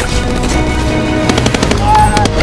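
Rapid automatic rifle fire from several guns, the shots coming thick and fast and densest in the second half, over film-score music.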